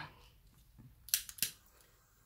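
Quiet room with two or three short, sharp clicks a little over a second in.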